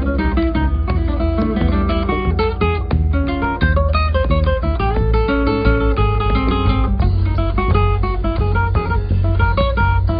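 Instrumental acoustic guitar music: quick runs of plucked notes and chords over a steady low bass.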